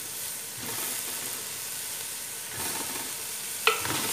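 Chicken pieces, onion, bell pepper and freshly added potato chunks sizzling in oil in a large aluminium pot. There is a steady frying hiss, then a single sharp knock on the pot near the end as a wooden spoon goes in to stir.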